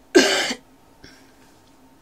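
A single short cough, loud and abrupt, lasting under half a second.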